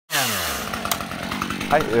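Chainsaw engine starting high and quickly falling in pitch toward idle, then running on. There is one short click about a second in.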